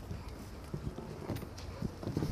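Faint footsteps on a hard floor: a few soft, irregular knocks over low room noise, as a child walks up.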